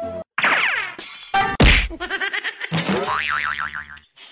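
Cartoon comedy sound effects: a falling whistle, two sharp whacks about a second and a half in, the second the loudest, then a long wobbling boing.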